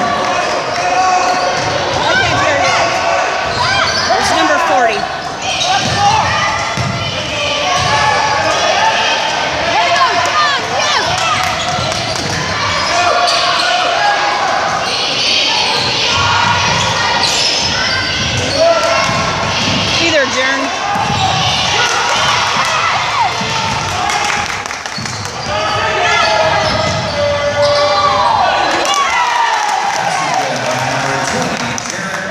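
Basketball game in a gym: the ball bouncing on the hardwood floor and sneakers squeaking as players run, over continuous crowd chatter and shouts.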